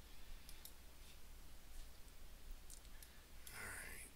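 A few faint computer-mouse clicks over a steady low electrical hum, with a short hiss near the end.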